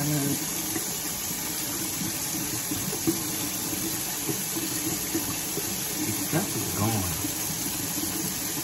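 Kitchen faucet running steadily into a stainless steel sink as shampooed hair is scrubbed under the stream. A short voice sound comes near the end.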